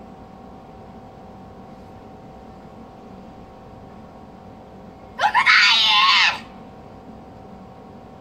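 A girl's loud shout about five seconds in, lasting about a second: two short clipped onsets, then a long held call. She is calling out the kata's name, Kanku Dai, as a karate competitor does before starting.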